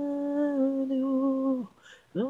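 Male lead vocal with no instruments, holding one long sung note that ends about a second and a half in. A short, near-silent gap follows.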